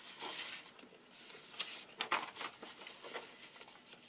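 Sheets of paper rustling and sliding against one another as they are shuffled and laid into a stack by hand, in several short rustles with a couple of sharper flicks about halfway through.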